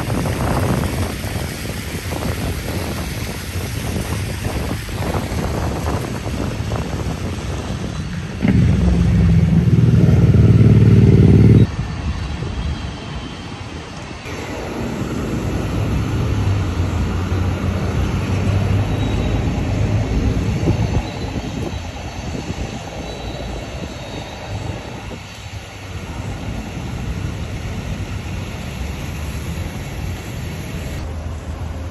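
Downtown street traffic with vehicles passing. About a third of the way in, a loud low engine drone starts and cuts off abruptly after about three seconds. In the middle, a second, heavier engine drone swells and fades as a trolley-style tour bus goes by.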